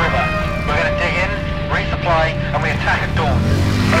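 Men's voices calling out over a steady low rumble that swells near the end, with background music underneath.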